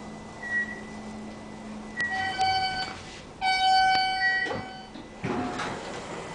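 Otis elevator's electronic chime sounding twice, two ringing tones about a second long each and about half a second apart, the second one louder. On Otis cars two chimes signal a car going down. A faint steady hum lies under the first part.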